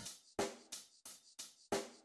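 Intro music: a drum kit striking a steady beat of single hits, about three a second, each one ringing out briefly before the next.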